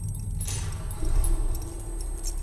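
A low steady rumble with light metallic jingling, like keys jangling.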